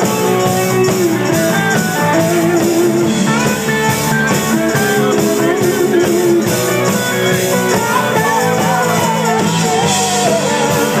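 Live rock band playing loud and steady, led by electric guitars, with bending, wavering guitar notes over a driving beat.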